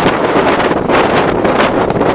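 Strong gale-force wind blowing hard across the microphone: a loud, continuous rush of wind noise.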